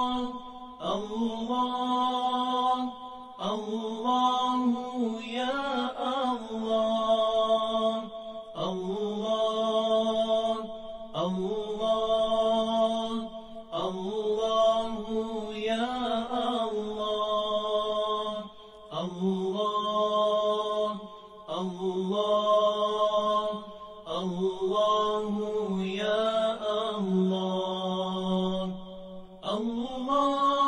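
A single voice chanting a devotional chant in long, held, ornamented phrases, each a few seconds long, with short breaths between them.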